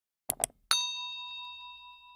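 A quick double mouse click, then a bright bell ding that rings with several pitches and fades away over about two seconds: the click-and-chime sound effect of a notification bell being switched on.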